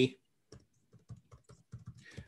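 Typing on a computer keyboard: a run of irregular key clicks starting about half a second in.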